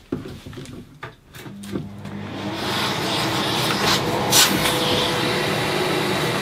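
Workshop dust extractor starting up about two seconds in and then running steadily, its hose sucking MDF dust out of the shroud of a concealed-hinge drilling jig. A few knocks from the hose being handled come before it starts.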